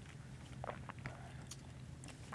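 Quiet room with a low steady hum and a few faint, short clicks and sips as small communion cups are drunk from and handled.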